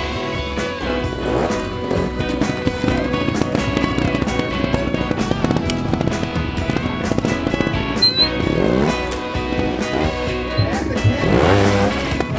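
Background music laid over a trials motorcycle engine that revs up in short rising bursts a few times, the last burst near the end the loudest.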